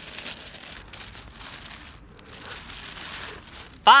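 Thin plastic carrier bag crinkling and rustling in irregular handling as a boxed Funko Pop figure is pulled out of it, ending in a loud excited exclamation.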